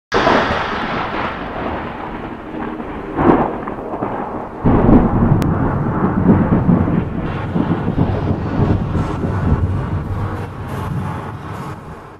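Thunder-like rumbling with rain-like noise opening a rap track. It swells briefly about three seconds in and grows fuller and louder from about four and a half seconds.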